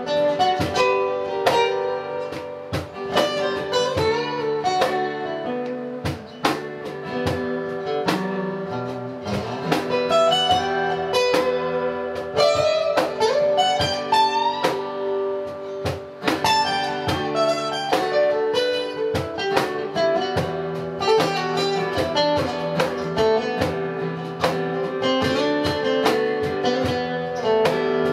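Two acoustic guitars playing an instrumental break with no vocals: chords strummed steadily under a picked lead line whose notes bend up in pitch in places.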